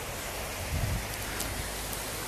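Shallow river rushing steadily over a stony bed, a broad even hiss of water, with a brief low bump about a second in.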